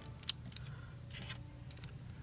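Clear plastic 3D crystal puzzle pieces handled in the fingers: a few light clicks and scrapes of plastic on plastic, the sharpest click about a third of a second in.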